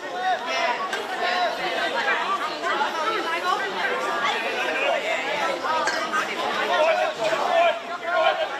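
Several people talking at once: a steady, overlapping chatter of voices in which no single word stands out.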